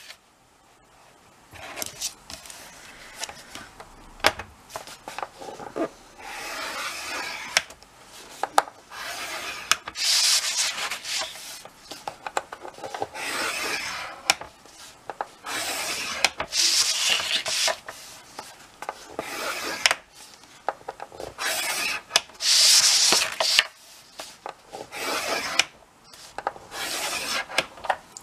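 A scoring tool drawn along the grooves of a scoring board, pressing score lines into a sheet of cardstock: about eight strokes, each a second or two long. Short clicks and taps come between the strokes as the card is lifted, turned and set back on the board.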